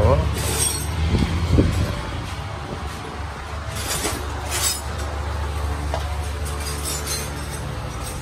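Motorbike engine idling steadily, with a few short high clinks near the start and around the middle.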